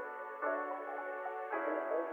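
Background ambient music: soft sustained chords that change about once a second.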